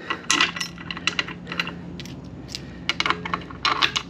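Steel bolts clinking against each other in a hand and against the transmission case as they are set into the bellhousing flange holes by hand: irregular light metallic clicks in small clusters.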